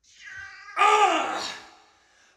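A domestic cat meowing: one drawn-out meow that starts soft, turns loud a little under a second in with its pitch arching up and back down, then fades away.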